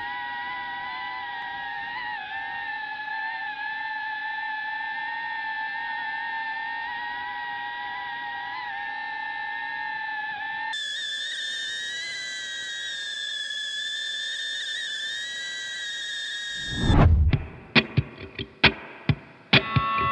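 DJI FPV drone's motors and propellers whining steadily in flight, heard from the camera mounted on the drone, the pitch wavering slightly and shifting about ten seconds in. Near the end there is a loud jolt as the drone comes down to the ground, followed by a run of sharp knocks.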